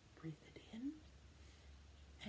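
A woman's soft, whispered voice: two brief quiet murmurs, the second rising in pitch.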